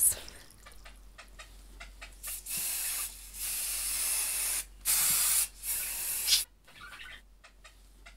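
Aerosol hairspray sprayed in four hissing bursts of about half a second to a second each, after a few faint clicks and rustles of hair being handled.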